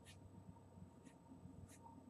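Faint, quick, light strokes of a drawing pencil on paper: three short scratches, one at the start, one about a second in and one near the end.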